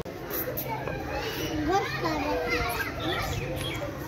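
Voices of several children and adults chattering and calling out, overlapping.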